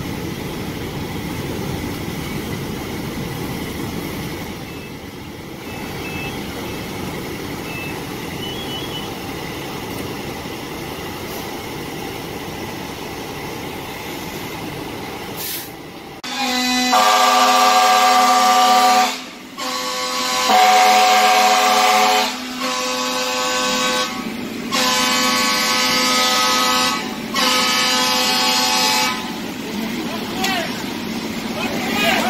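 Steady low rumble of idling fire engines, then, about halfway through, a fire apparatus air horn sounding a string of long, loud blasts, about five, with short breaks between them. This is the emergency evacuation signal calling all firefighters out of the fire building.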